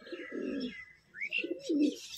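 Young Madrasi pigeons cooing: two low coos about a second apart, with faint higher chirps.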